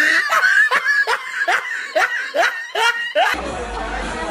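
A person laughing hard in a quick, even run of short "ha" bursts, about two to three a second, cut off abruptly about three seconds in, followed by music with a low hum.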